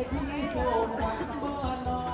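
Several people's voices chattering close by, with a low, regular beat thumping underneath about two and a half times a second.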